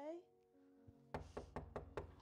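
A quick run of about five knocks on a door, starting a little past halfway, over a quiet steady music bed.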